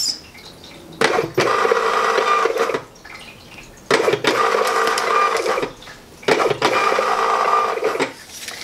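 Thermal shipping label printer feeding and printing 4x6 labels: three runs of a steady motor whine, each about two seconds long, with short pauses between them as one label after another comes out.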